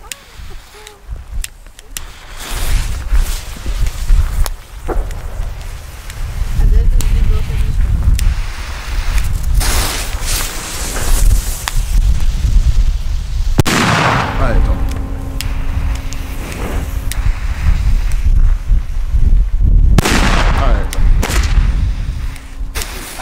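Tropic Exploder 4 P1 firecrackers, each with 4.5 g of net explosive mass, going off one after another with several sharp bangs, unusually loud for their class.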